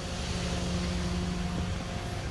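A steady mechanical hum, one low tone with its overtones, holding an even pitch under a soft outdoor hiss.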